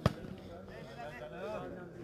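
A volleyball struck hard by hand: one sharp smack at the very start, followed by a murmur of spectators' voices.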